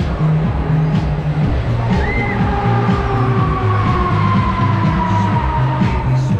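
Loud dance music with a heavy, repeating bass beat, the kind a Break Dance ride plays over its sound system while running. In the second half a long high tone slides slowly down in pitch.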